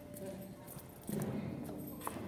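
Footsteps clicking on a hard floor in a large hall, about two steps a second, with faint voices murmuring in the background from about a second in.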